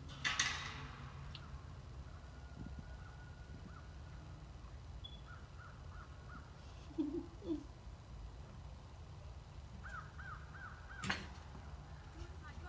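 Crows cawing faintly in two runs of about four caws each, one near the middle and one near the end. A short noisy rush comes just after the start, and a sharp click comes about a second before the end.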